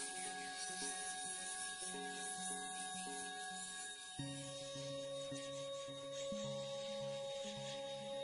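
Soft, slow instrumental background music: a gentle melody of held notes changing about twice a second over sustained higher tones, shifting lower about halfway through.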